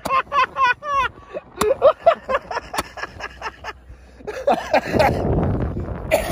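Several men laughing hard in rapid bursts, with a few sharp pops in between and a noisy rush near the end.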